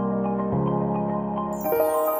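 Background music with slow, sustained chords, changing chord about half a second in and again near the end.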